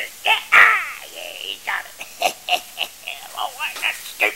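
A man's voice laughing and exclaiming in short bursts, loudest about half a second in.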